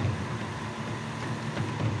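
Steady low background hum of machinery, with a few faint handling ticks as fishing line is drawn off a spool.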